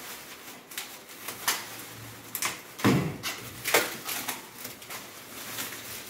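Thin plastic film crinkling and rustling in irregular crackles as it is gripped and pulled off a new stove by hand, loudest about three seconds in.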